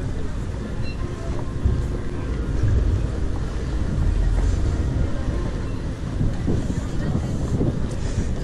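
Wind buffeting the microphone, a heavy uneven low rumble, with faint voices of passers-by in the background.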